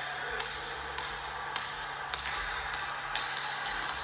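A basketball being dribbled on a hardwood gym floor, bouncing about once every half second or so against a steady background hiss.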